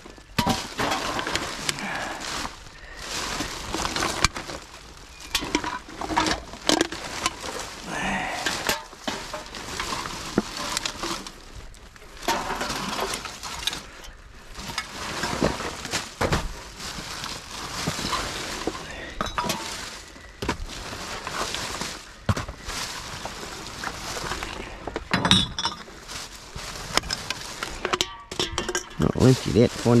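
Rummaging through trash in a metal dumpster: plastic garbage bags rustling and crinkling, with irregular clinks and knocks of bottles, cans and other rubbish being shifted about.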